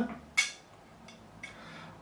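A single sharp metallic click as two steel straight-edge tools, a fret rocker and a precision straight edge, are set against each other, followed by a fainter tick about a second later.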